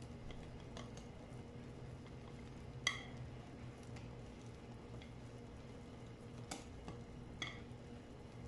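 Wire whisk stirring thick puba (fermented cassava) cake batter slowly in a glass bowl, faint, with a few light clicks of the whisk against the glass; the loudest click comes about three seconds in.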